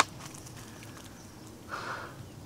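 Footsteps through dry reeds and dead wood: a sharp snap at the start, a few faint crackles, then a short rustle near the end.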